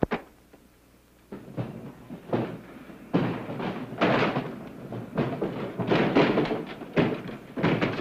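A sharp thunk, then from about a second in a run of irregular knocks, thuds and scraping as crates and a trunk are handled and shifted about.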